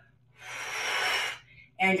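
One long, audible breath of the lifter, a rush of air lasting about a second that swells and fades, taken between overhead-press reps with the barbell held at her shoulders.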